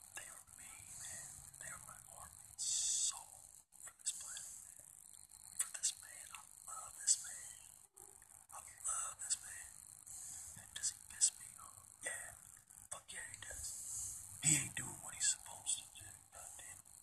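Whispered speech: a voice talking under its breath in short, breathy phrases.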